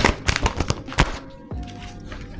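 Oracle cards being handled and shuffled: a quick, irregular run of clicks and snaps that stops about a second and a half in. Soft background music with steady held tones runs underneath.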